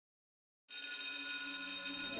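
A bell ringing steadily, cutting in suddenly just under a second in with several high, unwavering tones.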